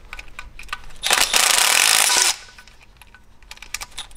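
Compact Milwaukee cordless impact tool hammering for about a second and a half, breaking loose a tight oil pan bolt on an engine. A few light clicks and taps come before it.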